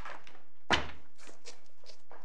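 A single dull thump about three-quarters of a second in, followed by a few light clicks and rustles: a bound court bundle being handled on a lectern close to the microphone.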